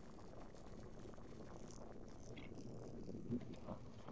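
Faint low rumble of wind on the microphone, with a brief soft knock a little over three seconds in.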